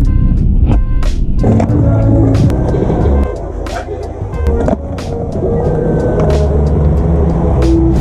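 Background music with skateboard tricks over it: a series of sharp clacks as the board pops and lands on stone paving, at irregular intervals.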